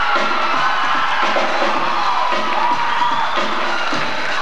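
A rap backing drum beat playing on under an audience cheering and whooping, with high shouts sliding up and down in pitch.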